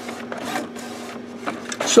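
HP Officejet Pro 8600 inkjet printer printing, its print carriage making repeated passes, about two a second, over a steady low motor hum.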